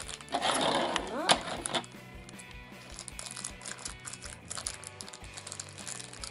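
Background music under the crinkling of a small clear plastic bag being opened by hand to take out a toy figure. The crinkling is loudest in the first two seconds, then lighter.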